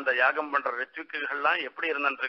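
Only speech: a man talking continuously, delivering a spoken religious discourse.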